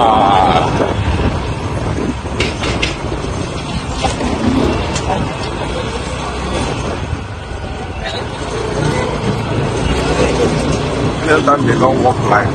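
Busy city street ambience: a steady rumble of road traffic under passing voices.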